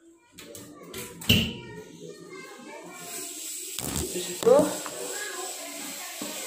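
Close handling noise with one sharp knock about a second in, then a steady hiss and a child's indistinct voice in the second half.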